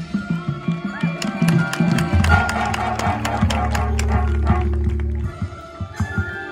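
Marching band playing: a quick run of sharp percussion strikes over a low held note, which drops away about five seconds in.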